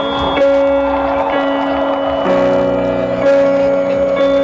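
Live instrumental post-rock band playing through a festival PA, heard from the crowd: electric guitars hold long sustained notes, and lower notes join in a little past halfway.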